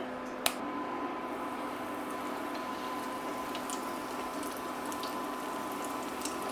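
Two battered chicken breasts just lowered into oil at about 350°F, deep-frying in a carbon-steel wok: a steady bubbling sizzle, with a faint steady hum beneath it. A single click comes about half a second in.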